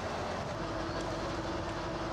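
A truck-mounted hydraulic loader crane at work: the truck's engine runs steadily, and a steady hum from the hydraulics comes in about half a second in.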